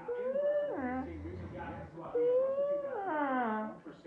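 A voice howling twice: two long calls, each held on one pitch and then sliding down at the end.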